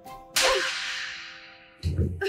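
A single hard slap across the face: one sharp crack about a third of a second in, fading out slowly over a second or more, over faint steady music. A low, heavy thud comes near the end.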